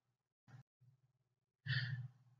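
A quiet pause with a faint steady low hum, then a short breath drawn in by a person near the end.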